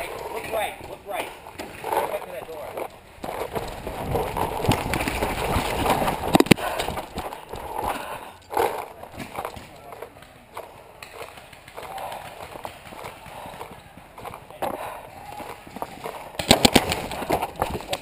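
Footsteps and gear rattle as a paintball player moves across the field, with faint voices. Near the end comes a rapid string of paintball marker shots, a quick run of sharp pops.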